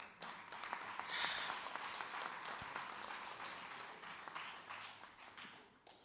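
Audience applauding with dense hand-clapping, which swells in the first second or two and then gradually dies away.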